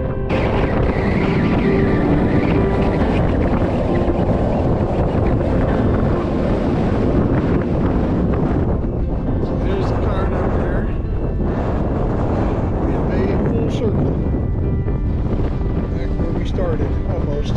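Strong wind buffeting the microphone: a loud, continuous, gusting roar heaviest in the low end. Background music fades out in the first few seconds.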